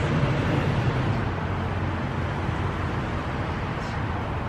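Steady outdoor background noise with a low hum, like road traffic going by.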